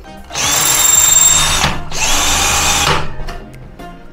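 Cordless drill running at speed in two bursts of about a second each, with a short pause between, working through a metal strap hinge into a PVC door.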